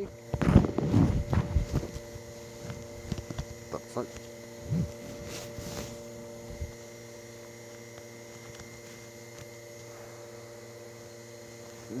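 A muffled wordless voice for the first couple of seconds, then light rustling and soft clicks as a disposable duckbill N95 respirator's straps are pulled over the head, all over a steady electrical hum.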